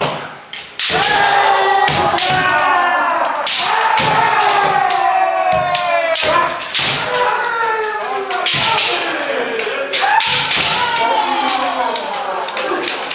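Kendo practice: many overlapping drawn-out kiai shouts that fall in pitch, mixed with sharp clacks of bamboo shinai striking and stamping footwork on a wooden floor. The shouting starts in earnest about a second in and runs on thick and loud.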